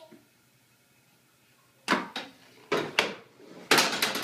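Swiffer mop's handle knocking and clattering against the bars of a metal baby gate and the wood floor as it is dragged through the gate, a run of sharp knocks about half a second apart in the second half, after a quiet start.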